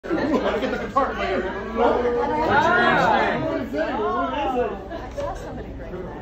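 Several people talking over one another and laughing, with drawn-out exclamations of "oh" near the middle.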